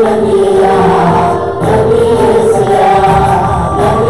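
Tamil Christian worship song sung live: a man's lead voice into a microphone with backing singers and accompaniment, holding long sustained notes.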